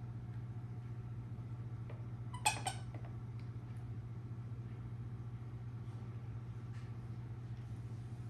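A toddler gives a brief high squeal in two short parts about two and a half seconds in, over a steady low hum.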